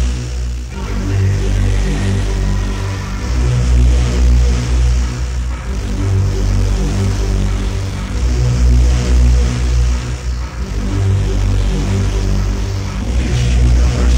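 Hardcore techno (gabba) DJ mix played from a 1994 cassette recording: a heavy, repeating kick drum and bass pattern with synth lines above it.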